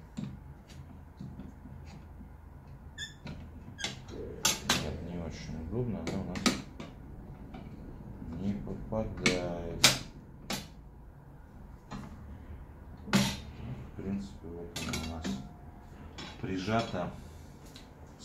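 Irregular clicks, taps and knocks of hard plastic and metal as a clamp is set against the table-saw blade and the miter gauge is shifted on the saw table, the sharpest knock about ten seconds in.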